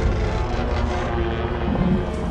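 Action-film battle soundtrack: a dramatic score over dense, continuous low rumbling effects as a giant robot dinosaur fights amid exploding earth and debris.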